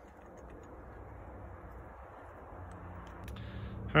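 A few faint light clicks of small aluminium bike parts being handled as a headset top cap is set back on a bicycle stem, over faint steady background noise. A low hum grows slightly near the end.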